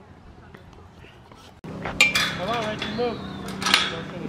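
Sharp metallic clinks and rattling from a chain-link backstop fence, starting about halfway through, with children's voices faintly behind.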